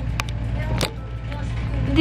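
A steady low background hum, with two sharp clicks, one about a fifth of a second in and one just before a second in.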